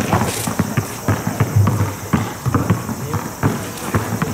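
A basketball being dribbled on an asphalt court, mixed with the quick patter and scuffs of sneakers as a player drives toward the basket, in a run of irregular thuds.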